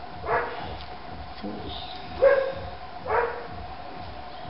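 A small dog barking three times in short, sharp barks, spaced about a second apart.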